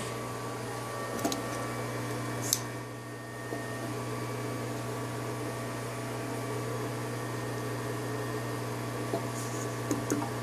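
A steady low electrical hum with several steady overtones, as from machinery left running, with a few faint clicks about a second in, at two and a half seconds, and near the end.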